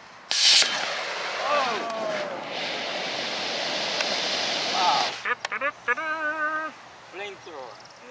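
E16-0 model rocket motor lighting with a sharp blast about half a second in, then a loud rushing hiss for about four seconds that stops abruptly: the old motor overpressured and its clay nozzle blew out. Voices exclaim over the hiss, and after it someone gives a drawn-out wavering call.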